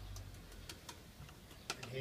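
A few light, sharp clicks and taps of a paintbrush against a plastic paint tub as the brush is loaded, spread out over the two seconds, the loudest near the end.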